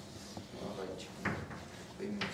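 Chalk on a blackboard: short scraping and tapping strokes as a circle and a bracket are drawn, the sharpest of them a little after a second in.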